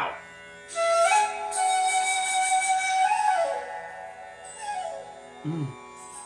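Bansuri (bamboo flute) playing one long note. It rises into the note about a second in, holds it with audible breath, and glides down just after three seconds.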